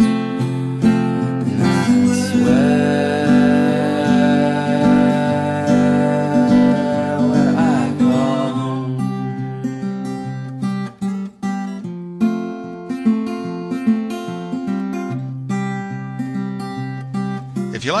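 Acoustic guitar music. The playing is full and sustained at first, then thins to separate plucked notes about halfway through.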